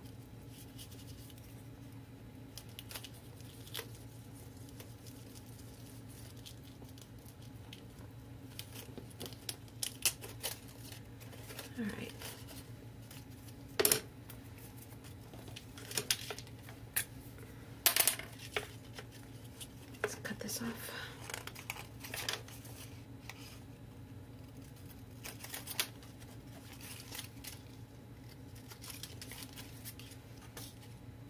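Small clicks, taps and paper rustles from craft tools and paper being handled on a work table, with two sharper knocks in the middle, over a steady low hum.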